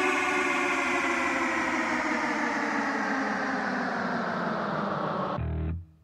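Rock music: one long, sustained distorted guitar chord slowly sliding down in pitch. About five and a half seconds in, it cuts off and heavy staccato chords with deep bass start.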